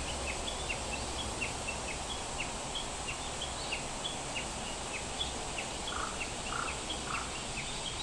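Background outdoor ambience of a small bird chirping over a steady hiss: short, high, falling chirps repeat about three times a second, with a few fainter lower calls near the end.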